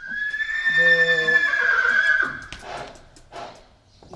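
A horse neighing: one loud, long whinny of about two seconds that holds a high pitch and then tails off.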